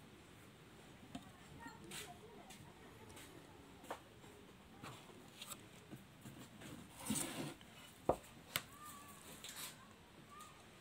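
Faint kitchen handling sounds: scattered light clicks and knocks of a bowl and utensils as sliced bamboo shoots are handled, with a brief scraping rustle about seven seconds in and a sharp knock just after it, the loudest sound.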